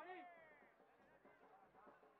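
A high shouted call, its pitch falling away over the first half second, then faint distant voices of players on the field.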